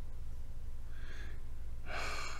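A man breathing, with one faint breath about a second in and a stronger breath near the end. A steady low hum runs underneath.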